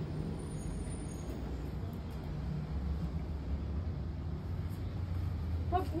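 A steady low rumble, swelling a little from about halfway through; a woman's voice starts just at the end.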